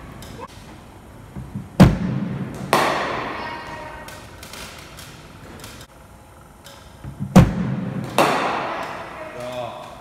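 Two cricket deliveries in an indoor net, each heard as a pair of sharp knocks about a second apart that include the bat striking the ball. The knocks echo and die away slowly in the large hall. The second pair comes about five and a half seconds after the first.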